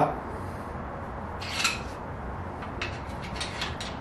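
Quiet handling noises: a brief rub about a second and a half in, then a few light clicks near the end, over a low steady room hum.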